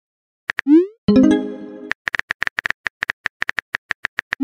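Texting-app sound effects: a short rising bloop and a bright chiming tone that rings and fades, followed by about two seconds of rapid keyboard typing clicks.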